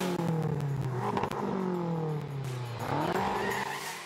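A car engine sound effect: the engine note falls twice, each drop lasting about a second and a half, then climbs again near the end.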